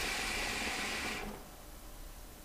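A draw on a hookah through an Ice Bazooka cooling mouthpiece: air is pulled through the hose and water chamber as a steady rushing hiss, which stops about a second in.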